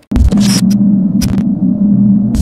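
A loud electrical hum that cuts in suddenly, a steady low buzz broken by short crackles of static every half second or so, like a glitch or old-film sound effect.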